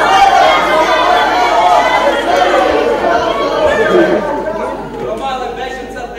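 Many people talking over one another: a loud babble of overlapping voices that eases off somewhat near the end.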